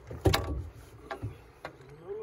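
A loud clattering knock of gear against the boat's side, a reach pole handled at the gunwale, followed by a few lighter taps as the jug line is hauled in by hand.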